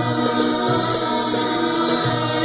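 A live stage-musical number: singers hold long notes in chorus over instrumental backing, with a repeating low bass note beneath.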